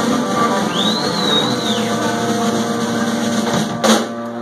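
Live rock band with electric guitars, bass and drums sounding a long held chord, with a high note bending up and down about a second in. It ends on a single loud hit just before the end.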